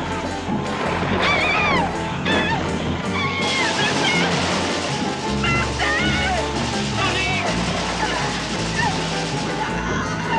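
Dramatic film score playing under the panicked shouts and screams of a crowd of people.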